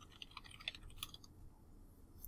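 Faint computer keyboard typing: a quick run of light key clicks that stops a little past halfway.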